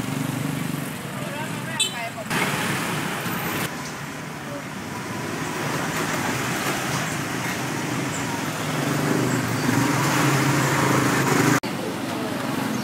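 Small motorbikes and scooters running and passing close by through a narrow street, over a steady wash of traffic noise, swelling louder toward the end; the sound breaks off abruptly a few times.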